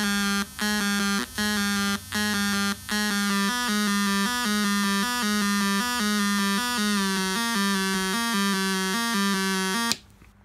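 Homemade cigar box synth built on 555/556 timer chips and a 4017 counter, running its four-step sequencer through a small built-in speaker: a buzzy tone steps between close pitches in a repeating pattern, about three notes a second. There are brief dropouts about every 0.75 s in the first three seconds. The sound cuts off abruptly at the end as the power switch is turned off.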